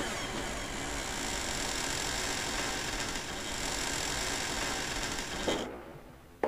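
A steady, noisy, mechanical-sounding drone that fades out about five and a half seconds in, with a knock as it dies away.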